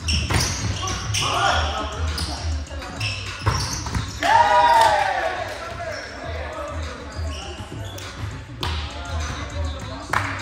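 Indoor volleyball rally in a gym: a volleyball struck several times with sharp smacks, the loudest hits about three and a half to four seconds in and again near the end, with a player's loud shout just after. Background music with a pulsing bass beat runs underneath.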